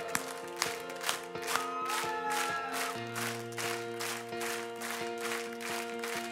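Pop band playing a song's instrumental intro: held keyboard chords over a steady beat of about two strokes a second, the chord changing about halfway through.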